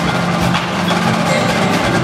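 Indoor percussion ensemble playing: quick marching-drum strokes and mallet keyboards (marimbas and vibraphones) over held low tones.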